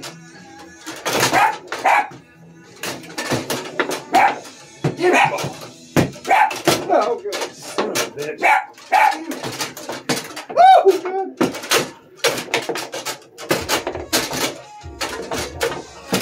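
Foosball play: an irregular run of sharp clacks and knocks as the ball is struck by the rod men and rebounds off the table walls. A dog whines now and then.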